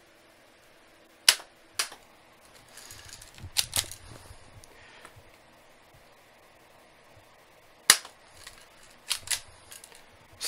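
Cheap spring-powered airsoft pistol fired twice, each shot a sharp snap, about a second in and again near eight seconds. Smaller clicks and handling noise come between and after the shots.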